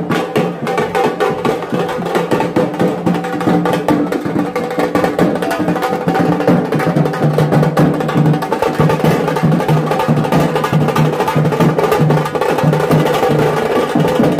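A street drum band playing a loud, fast, dense rhythm on dhol barrel drums and stick-beaten drums.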